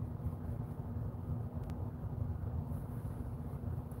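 Low background room noise: a steady low rumble with a faint constant hum.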